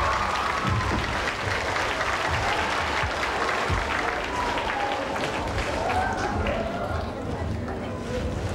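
A large audience of school students applauding: a dense, steady patter of many hands clapping, with voices over it.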